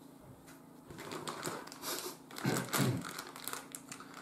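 Clear plastic packaging crinkling and rustling in the hands, with a quick run of small clicks and taps as a wax melt sampler is handled and unwrapped.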